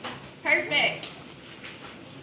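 Speech only: a woman's voice says a brief word or two about half a second in, then low room tone.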